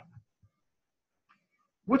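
A man's lecturing voice trails off, then about a second and a half of near silence, then speech starts again near the end.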